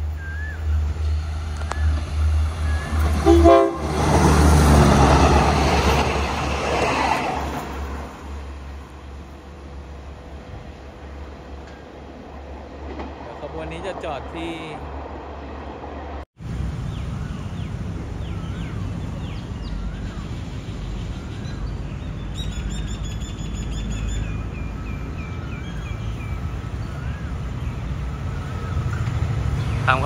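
Thai diesel railcar running toward the listener with a deep engine rumble, sounding its horn about four seconds in, the loudest moment. Later a steadier low diesel rumble from a train running away down the line, with birds chirping.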